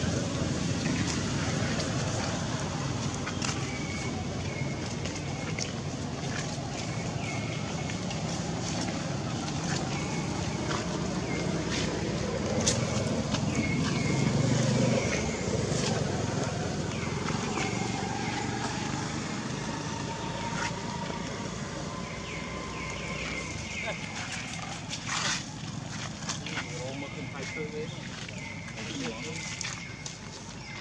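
People talking in the background, a low murmur of voices loudest in the first half, with short high chirping calls repeating throughout and a few sharp clicks.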